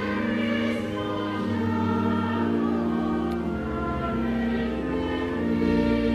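Church choir singing a slow hymn, each chord held for a second or more before moving to the next.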